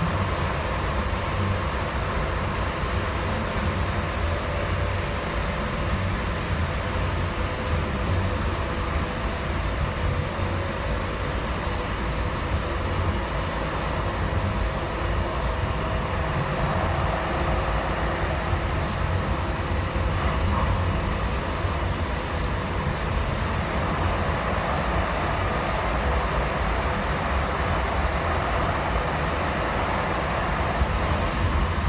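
Steady running noise heard from inside a Siemens U2 light rail car: a low, even rumble of the car on the track with a faint steady hum above it.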